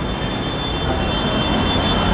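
Steady room background noise with a low hum, slowly growing louder, and a faint high whine through most of it that stops near the end.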